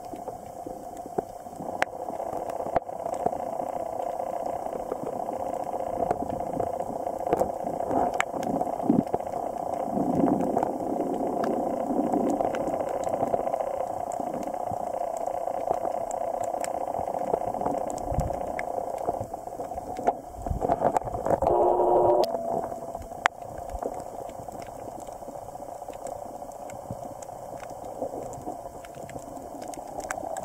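Underwater sound picked up by a camera in its housing: a steady muffled hiss, water gurgling and scattered sharp clicks. About two-thirds of the way through a louder, buzzing bubbling burst lasts a couple of seconds.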